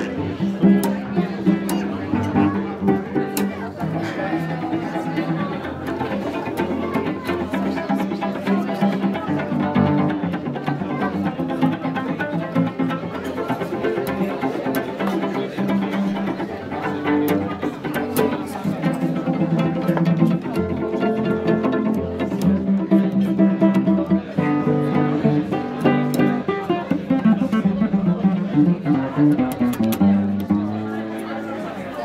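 Solo cello playing a melody of long held notes, with guests talking in the background.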